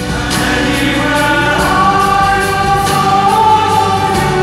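Male choir singing sustained chords live in a concert hall, the voices gliding upward about a second in and then holding.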